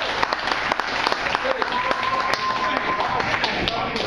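Audience clapping and shouting between songs at a small live rock show, the claps coming thick and uneven throughout.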